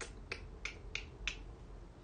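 About five short, sharp clicks, evenly spaced at roughly three a second, over faint room hum.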